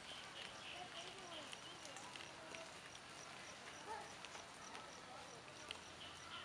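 Quiet forest ambience: faint distant voices, with a short high chirp repeating evenly about three times a second and a few faint clicks.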